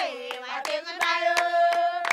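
Women singing together with steady hand clapping, holding one long note through the second half.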